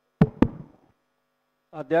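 Two sharp knocks about a quarter second apart, followed by a man starting to speak near the end.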